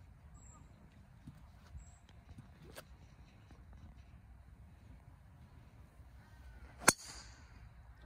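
A golf driver striking a teed ball: one sharp crack about seven seconds in, over faint low background noise.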